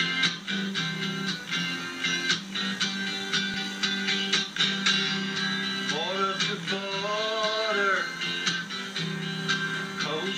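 Acoustic guitar strummed in a steady rhythm, heard through a television's speaker. A man's voice sings a line over it from about six to eight seconds in.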